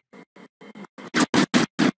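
Stuttering playback audio chopped into rapid short fragments, about six a second: faint at first, then about a second in the Photos app's lightning-bolt 3D effect sound comes in as a run of loud, choppy bursts.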